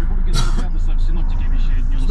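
Steady low rumble of a road vehicle, heard from inside its cabin, with a short hiss about half a second in.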